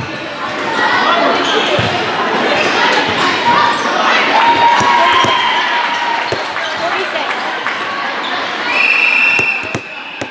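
Players and spectators chattering and calling out in a large, echoing sports hall, with a long, high whistle blast near the end. As it ends, a volleyball is bounced on the court floor a few times.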